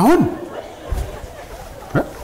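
Speech: a single short spoken 'em' whose pitch rises then falls, followed by a quiet room with a faint low thump.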